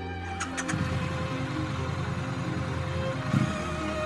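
Triumph motorcycle engine idling with a steady low pulse, starting about a second in, under background music.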